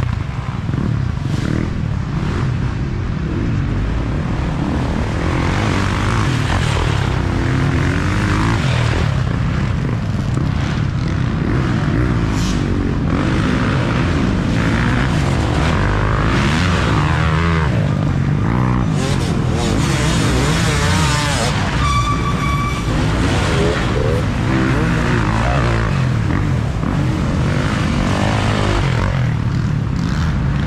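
Several dirt bike engines revving on a woods trail, their pitch rising and falling as riders accelerate and back off, over a constant drone of more bikes farther off. Near the middle a steady high-pitched note is held for about a second.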